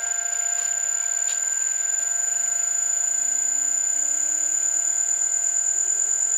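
Five-horsepower three-phase electric motor starting on an inverter (VFD). A steady high-pitched whine switches on at once, while a low hum rises slowly in pitch over several seconds as the motor runs up. The run-up time is set a little slow.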